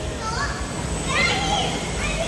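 Riders screaming on a swinging gondola ride that turns them upside down: two short spells of high shrieks that rise and fall, about half a second and a second and a half in, over a steady low rumble.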